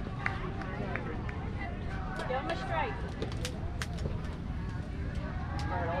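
Faint, distant voices talking and calling over a steady low rumble, with scattered sharp clicks through the middle.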